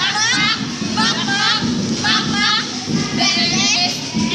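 Girls' high-pitched voices squealing and laughing: a quick run of short cries that swoop up and down in pitch, one after another.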